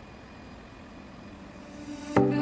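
Steady machinery noise of a ship's engine room with its diesel generators running: a faint, even hum.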